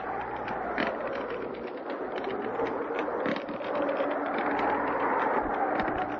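Steady hiss with scattered crackle from an old radio-drama recording, with a faint wavering tone under it.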